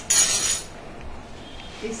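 A sharp clink, then about half a second of clattering as a plastic tea strainer is set against a small glass.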